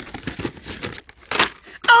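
Cardboard packaging rustling and scraping as a cardboard insert panel is lifted out of a box, with a louder, brief scrape about a second and a half in. A woman says "Oh" right at the end.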